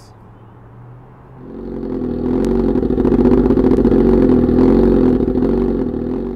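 Suzuki GSX-R1000's 999 cc inline-four engine running loud and steady through its aftermarket Voodoo exhaust tip. It comes in about a second and a half in and eases off at the very end.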